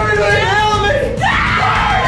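A woman screaming in disgust, two high, drawn-out screams in a row, the second harsher.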